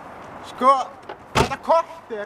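A car door slammed shut once, a sharp knock about one and a half seconds in, between short shouted words.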